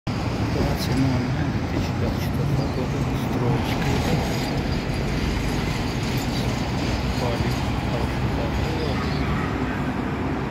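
Steady road traffic noise from cars passing on a busy multi-lane city street.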